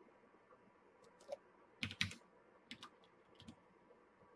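Computer keyboard keystrokes: a few scattered, faint taps, the loudest a close pair about two seconds in.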